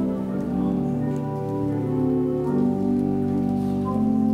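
Church organ playing a hymn in slow, sustained chords, the held notes moving to a new chord every second or so.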